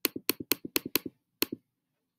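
A quick run of computer mouse clicks, each with a press and a release, then one more about a second and a half in: clicking the next-page arrow over and over to page forward through an online book.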